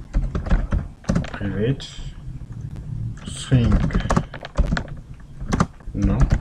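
Computer keyboard being typed on: irregular runs of keystroke clicks. Two short bits of voice come in between, about a second and a half and three and a half seconds in.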